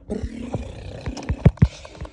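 Phone microphone handling noise: loud rustling as the mic rubs against fabric, with a series of heavy thumps, the loudest about halfway through.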